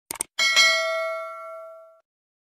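A quick double mouse-click sound effect, then a notification bell chime that rings out and fades over about a second and a half: the sound of the subscribe animation's bell icon being clicked.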